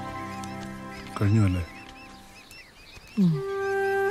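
Film soundtrack: soft background music fades out, a short low wavering voice sounds about a second in, and faint chirps continue. Near the end a brief falling spoken word is heard as flute music comes in.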